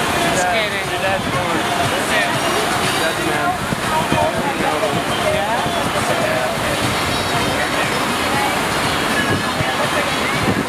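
Steady rush of water from a FlowRider sheet-wave surf machine, the pumped sheet of water pouring up the ride surface, with voices heard over it.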